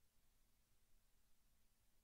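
Near silence: only a faint steady hiss with a low hum underneath.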